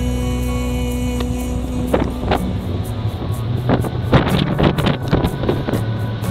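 A held drone of a devotional chant fades out about two seconds in. Under it runs the steady low rumble of a ship's engine. Over the second half come irregular gusts of wind buffeting the microphone.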